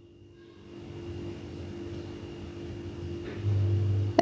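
A steady low hum with a faint constant tone, rising gently in level, with a deeper, louder drone added near the end.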